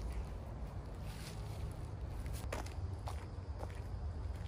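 Footsteps crunching through dry fallen leaves, with a few short crackles in the second half, over a steady low rumble.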